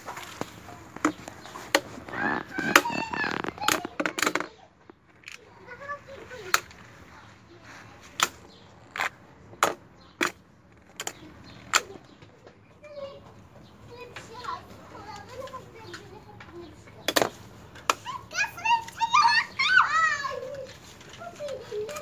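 Toy battling tops (Beyblade-style) knocking against each other and the plastic arena tray in a series of sharp clicks, thickest in the first half and with one loud knock a little after halfway. Children's voices come in around 2 to 4 seconds in and again near the end.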